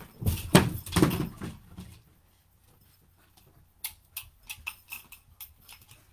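A puppy playing with a toy ball: a loud scuffle of thumps and rustling in the first two seconds, then a string of light, irregular clicks and taps.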